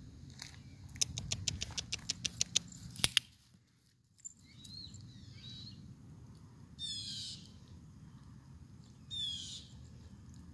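A quick run of about ten sharp clicks over two seconds, then two short bursts of rapid, high, falling bird chirps a couple of seconds apart near the end.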